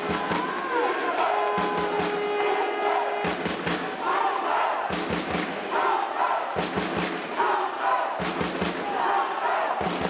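Spectators chanting and shouting at a football game, with a rhythmic pattern of short sharp beats that comes back about every second and a half.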